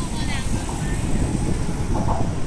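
Steady rumble of car traffic on the bridge roadway below, mixed with wind buffeting the microphone.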